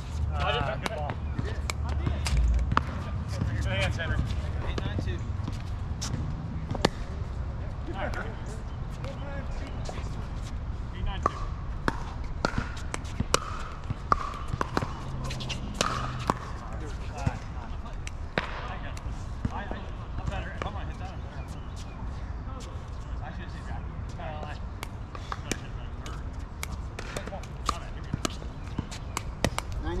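Pickleball paddles striking a hollow plastic ball in doubles rallies: a string of sharp pops at irregular intervals, some loud and close, others fainter.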